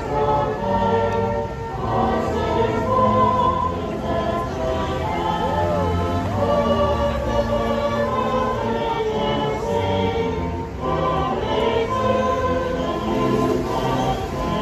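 Choir singing a Christmas carol in held chords, with brief breaks between phrases about two seconds in and again near eleven seconds.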